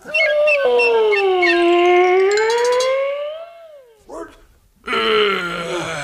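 A long, drawn-out howl lasting about three and a half seconds, its pitch sagging and then rising again before trailing off. A shorter call falling in pitch follows near the end.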